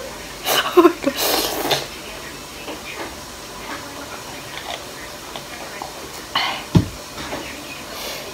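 A woman laughing and breathing out hard through her mouth in the first two seconds, her mouth burning from spicy ramen, then a quieter stretch while she drinks water. A short knock comes about seven seconds in.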